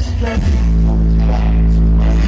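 Loud live hip-hop concert music: the backing track drops into a deep, sustained bass note about half a second in, with little or no vocal over it.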